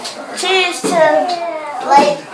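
Excited, high-pitched voices of people horsing around, gliding up and down without clear words, loudest near the end.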